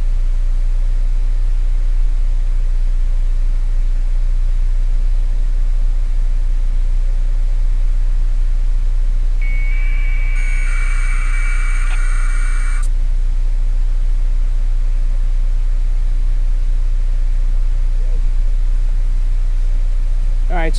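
Wind buffeting an outdoor microphone, a loud, steady low rumble. About ten seconds in, a burst of electronic tones lasts around three seconds.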